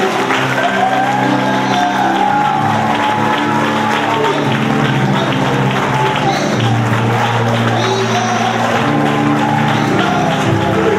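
Live church music with the congregation applauding and clapping in praise, an acclamation of God called for by the preacher.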